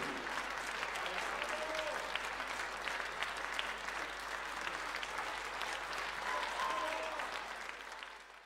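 Audience applauding steadily, with many close-packed claps, fading out near the end.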